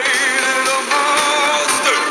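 Country-rock song playing, with a singing voice holding a wavering note at the start over guitar and band backing.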